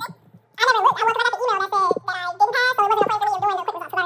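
A woman's high-pitched, wavering voice, talking or vocalizing without clear words, starting about half a second in, over a steady low hum.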